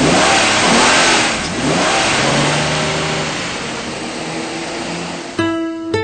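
A loud hissing wash of noise with faint sweeping tones fades away over about five seconds. Near the end an acoustic guitar starts plucking single notes.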